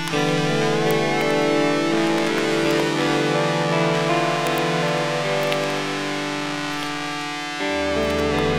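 Instrumental music led by guitar, with long held notes and chords that change every couple of seconds. A deep bass note comes in near the end.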